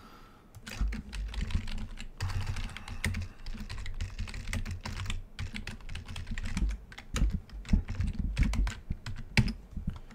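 Typing on a computer keyboard: a run of quick, irregular keystrokes with some heavier low thumps.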